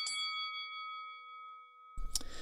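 Bell-like chime of the show's transition sting: a few quick strikes at the start, then several ringing tones that fade away over about two seconds.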